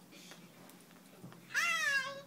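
An iPhone's speaker playing back a short spoken phrase in a high, squeaky voice, starting about one and a half seconds in, its pitch falling.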